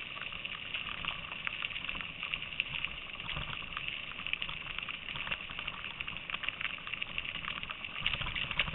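Bicycle rolling along a rough paved trail: a steady hiss from the tyres with frequent small clicks and rattles.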